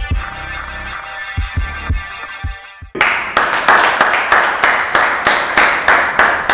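Intro theme music with held synth chords and deep bass booms, cutting off about three seconds in. Then a fast, steady run of claps, about four a second.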